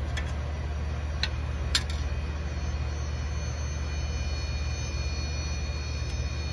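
A steady low hum with a faint high whine, and two light clicks of a metal spoon against a stainless steel skillet.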